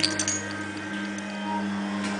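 Steady electrical mains hum, with a few light clicks in the first half second.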